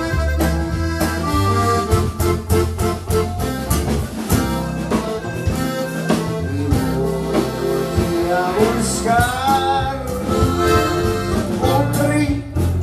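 Live Tejano band music: an accordion carrying the melody over a walking bass line and drums keeping a steady beat.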